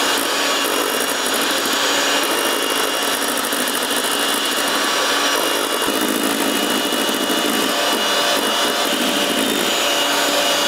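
Handheld electric mixer running steadily, its wire beaters whipping egg whites in a stainless steel bowl toward a foamy meringue. About six seconds in the sound gets a little fuller and lower as the mixer is moved around the bowl.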